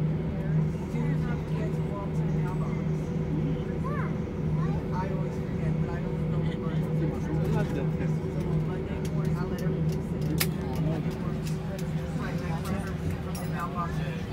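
Airbus A320 cabin noise while taxiing in after landing: a steady low hum from the engines at idle, with passengers talking in the background. A sharp click about ten and a half seconds in.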